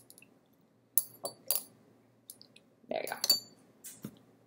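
Small glass clinks and clicks from a glass eyedropper and a small spray bottle being handled: a few light taps about a second in, then a louder clink with a short ring about three seconds in.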